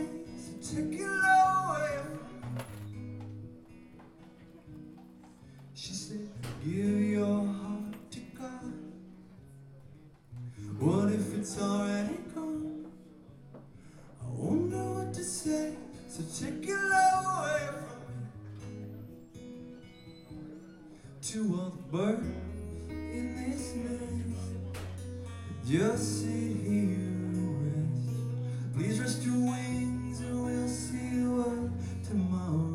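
A man singing to his own acoustic guitar: sung phrases come every few seconds over held, strummed chords. About two-thirds of the way in, low bass notes join and the playing grows fuller and steadier.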